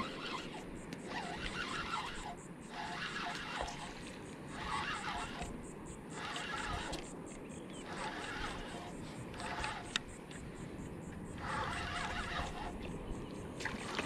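Spinning reel being cranked in short spurts, about one a second, as a hooked fish is reeled in, over a steady low rumble.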